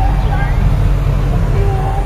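Other people talking faintly in the background over a steady low rumble.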